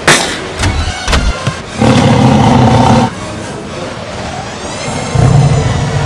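Dramatic film soundtrack: a few sharp bangs in the first second or so, then a loud sustained roar on a steady low pitch for about a second, and a low rumble near the end, under orchestral music.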